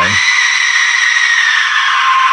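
Aztec death whistle blown hard: a loud, harsh, scream-like shriek with a whistling tone that sinks slowly in pitch.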